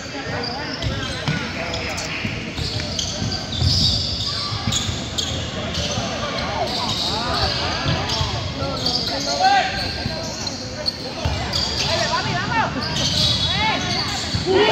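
Basketball bouncing on an indoor court during play, with spectators' voices over it, echoing in a large gym.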